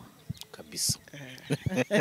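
A woman's voice speaking softly, close to a whisper, with a short sharp hiss of a sibilant just under a second in; fuller speech picks up near the end.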